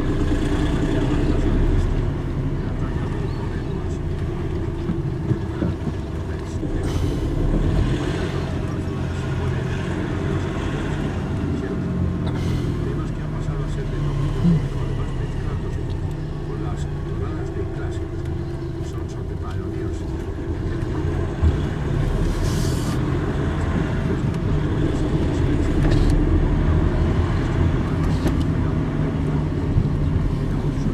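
Car engine and road noise heard from inside the cabin while driving at low speed: a steady low hum, with a few brief knocks.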